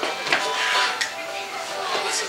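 Stray notes from acoustic string instruments as a small band gets ready to play, with people talking over them.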